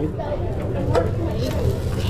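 Metal spatulas scraping and tapping on a teppanyaki griddle as a pile of fried rice is chopped and stirred. Underneath are background voices and a steady low rumble.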